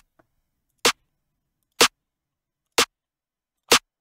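A snare drum one-shot sample played back again and again, four short hits about a second apart, with silence between. The web preview and the downloaded copy are being compared side by side, and they sound different.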